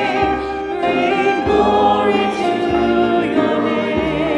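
Church choir singing a hymn in parts, with long held notes carrying vibrato, over a low instrumental accompaniment whose bass notes change about every second.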